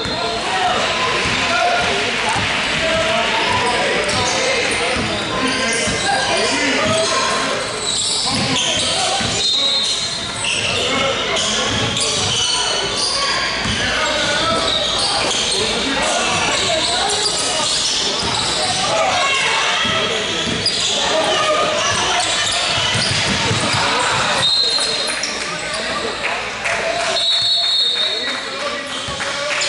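Basketball being dribbled and bouncing on a hardwood gym floor, with players and spectators shouting and talking over one another, echoing in a large hall. A few short, high referee whistle blasts sound about a third of the way in and near the end.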